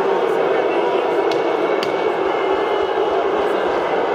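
Steady murmur of a large arena crowd chatting in the stands, with two sharp clicks between one and two seconds in.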